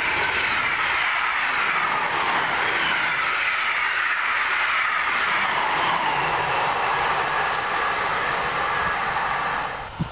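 SNCB electric passenger train passing close by at speed: a loud, steady rush of wheels on rail with a whine that slowly falls in pitch as it goes by. It cuts off abruptly just before the end.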